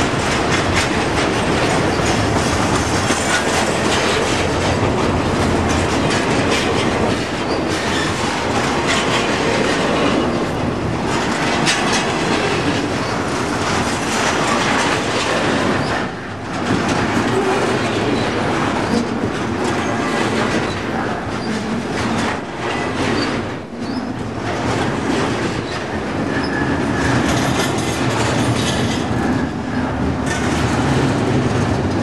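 Double-stack container well cars of a freight train rolling past close by: steady loud wheel-on-rail noise with clicking over the rail joints, dipping briefly twice.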